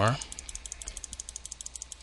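Computer mouse button clicked rapidly, about ten clicks a second, in an even run that stops shortly before the end.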